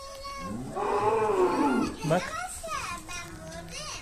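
A newborn lamb bleating once, a long wavering call lasting over a second.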